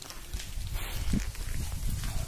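Low, uneven rumble of wind and handling on a phone microphone, with a few faint clicks.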